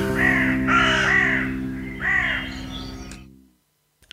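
A crow cawing four times over a held music chord, part of a jingle; the chord fades out about three and a half seconds in.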